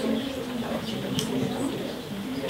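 Low, indistinct murmured voices in a small room, with a faint click about a second in.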